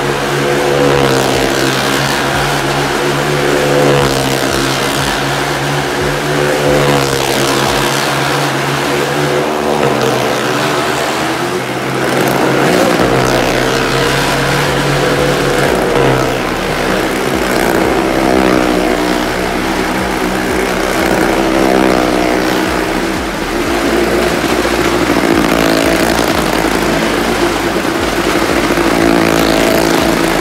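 Motorcycle engines running hard as the bikes circle the vertical wooden wall of a well-of-death arena. The engine pitch rises and falls every couple of seconds with each lap.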